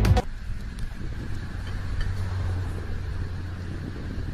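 Electronic music cuts off just after the start, giving way to a steady low outdoor rumble of background noise.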